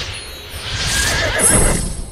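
Magical whoosh sound effect that starts suddenly and swells, with a horse's whinny about a second in.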